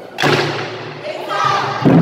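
Ensemble of Japanese taiko drums struck together with wooden sticks: a loud unison hit about a quarter second in that rings and fades, then a heavier unison hit near the end.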